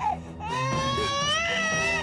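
A toddler crying: one long, drawn-out wail that starts about half a second in and is held to the end.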